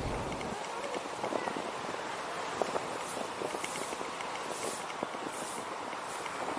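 Road noise from a slowly moving car, heard from its roof: a rolling rumble of tyres on paving with many light clicks and knocks, and a few brief rushes of hiss in the second half. A low hum fades out about half a second in.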